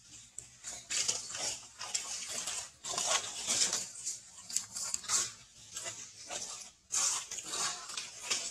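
Baby macaque suckling at its mother's nipple: irregular wet smacking and slurping sounds that start about a second in and come in uneven bursts.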